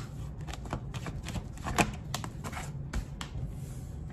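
A tarot deck being shuffled by hand: a run of quick, irregular card clicks and slaps, with one sharper snap a little before the middle.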